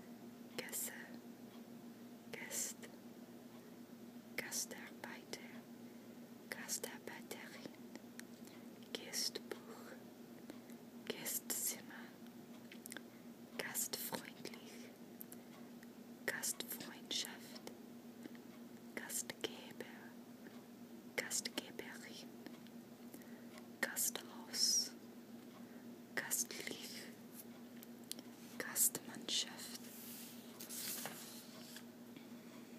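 Soft whispering: short whispered words or phrases every second or two, with pauses between, over a faint steady low hum.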